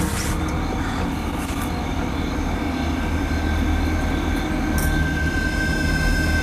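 A steady, loud low rumble with faint sustained tones held above it.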